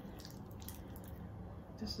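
Palms rubbing together with foaming facial cleanser between them, a faint wet rubbing.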